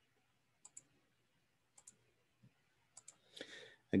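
Faint computer mouse clicks: three quick double clicks, about a second apart, then a short soft rustle just before speech.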